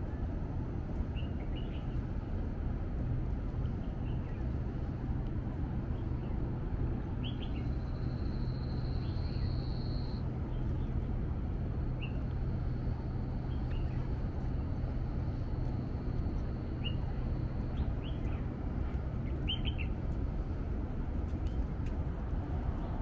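Birds giving short, scattered chirps over a steady low rumble and hum. A thin, high, steady whine comes in about a third of the way in and stops near the end.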